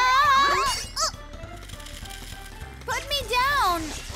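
A cartoon train character's wordless cries, sliding up and down in pitch in two bursts, the second about three seconds in, over background music and a low steady hum.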